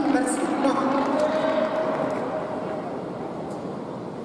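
A man's voice calling out after a sabre touch, with one held note about a second in, over hall noise that fades toward the end.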